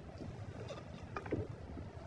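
Faint stirring of sliced onions sautéing in oil in a nonstick pot, with a few soft scrapes and taps of a wooden spatula about a second in.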